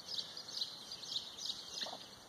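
Small birds chirping faintly in a quick run of short, high notes.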